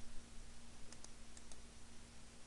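A few faint computer mouse clicks, about a second in, over a low steady hum.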